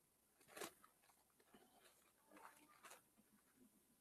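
Faint rustling of Bible pages being turned, a few short crackles about half a second in and again between two and three seconds in, over near-silent room tone.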